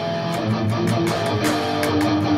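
Electric guitar in drop D tuning playing a power-chord variation as picked notes, several pick strokes a second, with notes ringing into each other.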